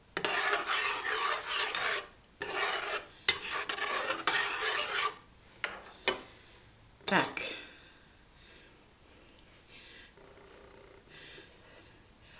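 Metal spoon scraping and rubbing around the inside of a stainless steel pot as a blended vegetable sauce is stirred. It comes in two stretches of about two and three seconds, with a few sharp clinks of the spoon against the pot around the middle.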